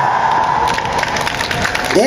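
The last held note of a trot song's keyboard accompaniment fades out, and a round of hand clapping from the performers and audience follows.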